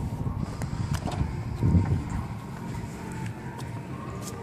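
The sedan's trunk being opened: a dull low thump a little under halfway through as the lid latch releases and the lid lifts, over low handling rumble and a faint steady hum.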